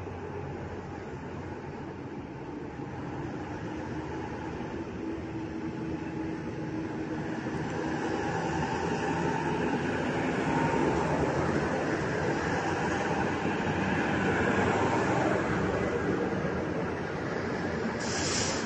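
Ural military trucks in a convoy driving past close by, with a steady engine and tyre rumble. It grows louder as a truck approaches, is loudest about ten to fifteen seconds in, and eases slightly near the end.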